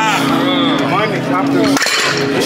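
Music playing under loud, excited voices. Near the end comes a short clank as the heavy dumbbells are dropped to the ground.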